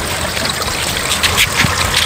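Water trickling steadily from a small garden waterfall into a preformed plastic backyard pond.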